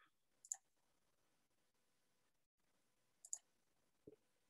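Two faint mouse clicks, one about half a second in and the other nearly three seconds later, in near silence.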